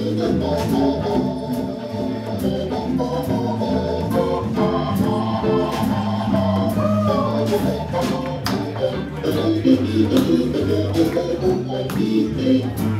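Hammond organ playing held chords in a live jazz band, the chords changing every second or so, with light percussion clicks behind.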